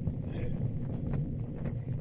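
Pause in a live speech recording played from an old vinyl LP: a steady low hum and hiss from the recording, with a few faint clicks of record surface noise.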